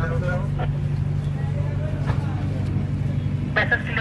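Boat engine running steadily with a low, even drone, with people talking over it at the start and near the end.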